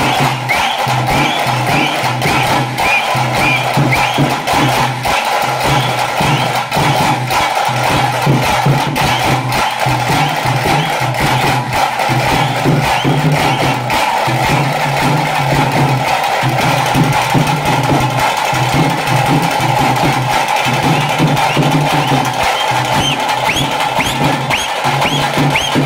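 Tase drums beating the fast, driving rhythm of a pili nalike tiger dance, dense sharp strokes over a steady low drone of beats.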